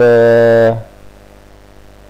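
A man's voice holding one drawn-out syllable at a steady pitch for under a second, then only low room hum.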